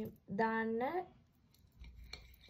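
A woman's voice: one short held syllable, steady in pitch and then rising at the end like a question.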